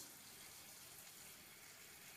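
Kitchen faucet running faintly and steadily into a plastic container as it is refilled with water.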